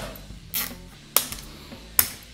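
Scissors snipping the tails off plastic zip ties: three short, sharp snips, about half a second in, just after one second, and at the very end, over quiet background music.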